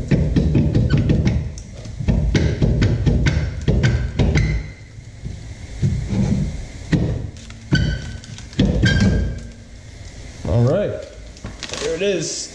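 Honda Accord rear brake drum being wiggled and worked off the hub: many irregular metallic clunks and knocks as the stuck drum catches on the hub, with brief ringing clangs of the drum, until it comes free.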